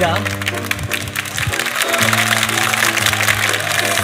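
Studio orchestra playing soft sustained chords, with a voice speaking briefly at the start.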